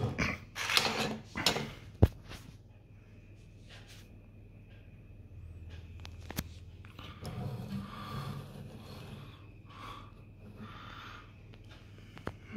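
Handling noise from a mirrorless camera being moved and turned around on a wooden table: rustles and knocks, with a sharp click about two seconds in and another about six seconds in. A faint steady high tone runs underneath through the middle.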